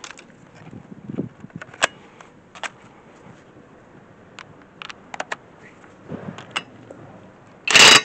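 Scattered light clicks and knocks as a socket and a cordless impact wrench are handled. Near the end comes one brief, loud burst from the Einhell cordless impact wrench on a wheel nut.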